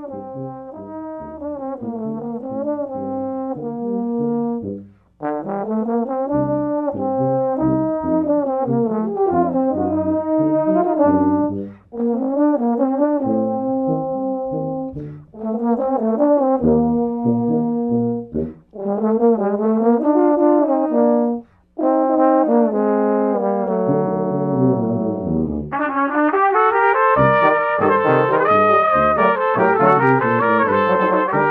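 Brass quintet of trumpets, French horn, trombone and tuba playing a tango, in phrases with short breaks between them. About 26 seconds in, the ensemble grows louder and brighter.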